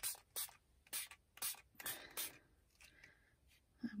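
Fine-mist spray bottle of homemade acrylic colour spray being spritzed onto cardstock in about six short hisses, roughly two a second, stopping about two and a half seconds in.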